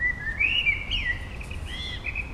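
A bird singing: a run of short whistled chirps that rise and fall in pitch, one phrase in the first second and another near the end, over a steady low background rumble.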